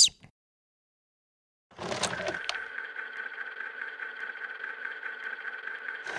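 A section-transition sound effect: after a moment of silence, a sudden noisy swell about two seconds in settles into a steady hum of several level tones.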